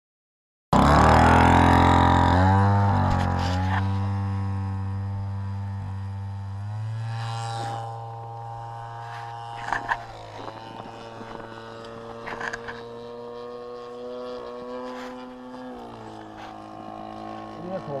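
A 45cc Husqvarna chainsaw engine in a large RC model plane, running at steady high throttle. It starts suddenly about a second in, very loud at first, with the pitch sagging slightly about two seconds in, then fades over the next ten seconds to a steady drone as the plane flies away.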